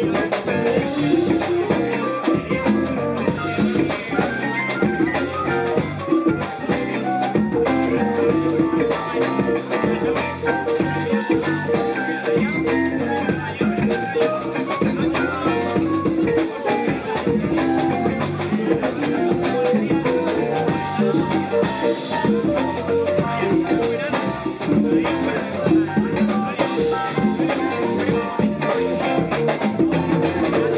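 Live band playing an instrumental jam with electric bass, electric guitar and drum kit, steady throughout.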